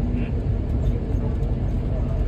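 Steady low rumble of a moving bus's engine and road noise, heard inside the passenger cabin.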